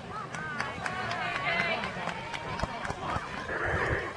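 Several people's voices overlapping outdoors, calling out and chattering, with no single clear speaker, from players and spectators around a baseball field.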